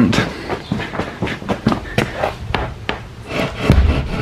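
Irregular light knocks and clicks, with a low rumble building near the end.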